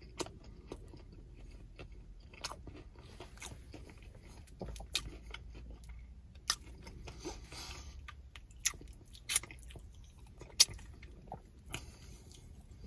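Close-up chewing of a fried chicken sandwich: irregular crunches of battered chicken and bun with wet mouth clicks, a few louder crunches in the second half.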